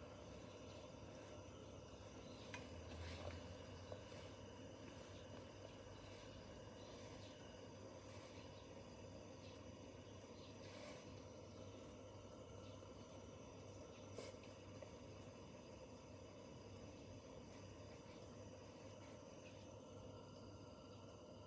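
Very faint, steady hiss of a SOTO ST320 gas stove burning, with a few light clicks and knocks from the metal hot-sandwich press being handled on it.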